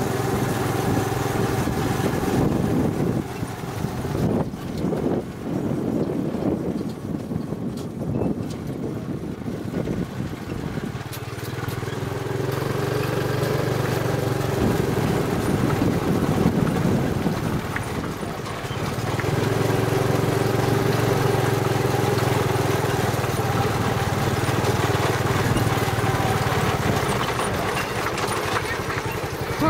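Small motorcycle engine pulling a sidecar taxi, heard from the passenger seat under the canopy. It runs steadily, eases off and turns uneven from about three seconds in, picks up again to a steady pull about eleven seconds in, dips briefly, then runs steadily again.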